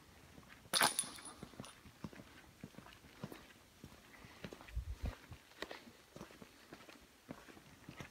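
Faint, irregular footsteps on a bare floor, with a single sharp knock about a second in.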